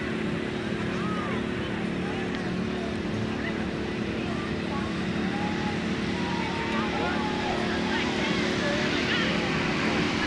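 An engine running steadily with a low, even hum, with distant crowd voices in the background.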